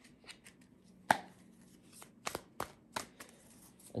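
A brand-new deck of tarot cards being shuffled by hand, stiff and not easy to shuffle. It gives scattered soft clicks and slaps of card on card, with one sharper snap about a second in.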